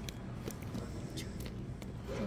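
A few faint light clicks and rustles of tape and packing being pulled out of a plastic tub, over a steady low room hum.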